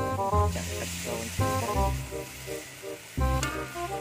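Sizzling from a hot steel wok as liquid is poured in, swelling about half a second in and dying away over a couple of seconds. Background music with a steady beat plays over it.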